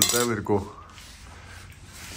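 A voice sounds briefly with a light clink right at the start, then low, even room noise.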